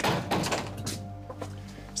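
Soft background music of quietly held notes, with a few short knocks in the first half second.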